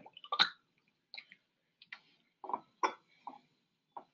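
Light, irregular clicks and taps, about seven in four seconds, from a plastic pipette working inside a glass test tube as a titration sample is mixed.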